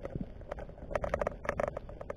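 A quick, irregular run of sharp clicks and knocks heard underwater, growing denser about halfway through.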